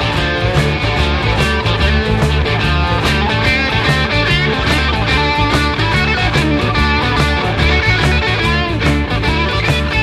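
Instrumental passage of an early-1970s rock song, with guitar over a steady, repeating bass line and drum beat and no vocals.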